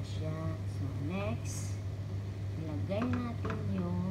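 Short stretches of a person's voice over a steady low hum.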